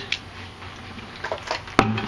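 Light metallic clicks from a metal rocket stove and its wire fuel rack being handled and set in place, followed by one sharp clank with a short ring near the end.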